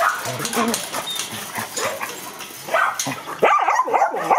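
Dogs whining and yipping, with a few barks. A quick run of high, bending whines and yelps starts about three seconds in and is the loudest part.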